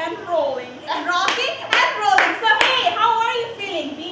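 About four sharp hand claps, roughly two a second, in the middle of excited talking.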